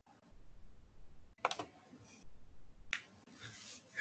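Two sharp clicks about a second and a half apart, each followed by a short faint rustle, made while the computer is worked to change the lecture slides.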